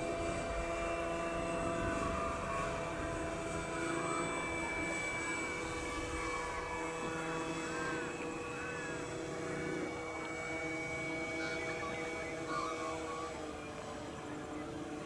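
Engine and propeller of a 1/4-scale DH82 Tiger Moth radio-controlled model biplane in flight, running at a steady pitch and fading slowly as the plane flies away, with a slight drop in pitch near the end.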